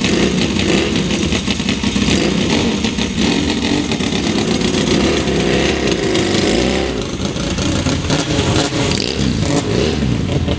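Two Yamaha XS650 air-cooled parallel-twin motorcycle engines running loud, the bikes pulling away one after the other; the sound lessens about seven seconds in as they ride off.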